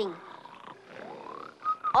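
Cartoon snoring sound effects of hibernating bears: a faint rumbling snore, then a rising glide in pitch about a second in and a short held tone near the end.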